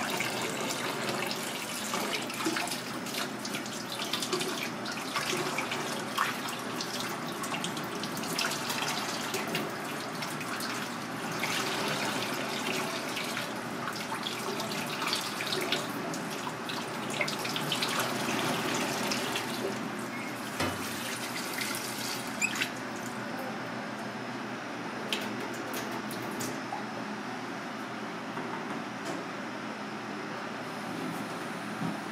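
Tap water running and splashing into a stainless steel sink and bowl as fish fillets are rinsed and rubbed by hand. The splashing is busiest for the first two-thirds and thins out after about 22 seconds.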